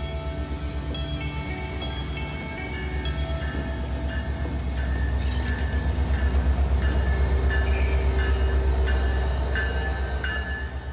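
Alaska Railroad diesel locomotive and passenger cars rolling slowly past close by: a deep, pulsing rumble that grows louder in the second half. Background music plays over it.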